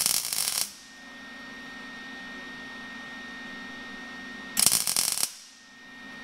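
Electric welder arcing in two short crackling bursts, tack-welding the emergency-brake handle's pawl to a tooth of its ratchet gear. The first burst comes right at the start, the second about four and a half seconds in, with a steady hum between.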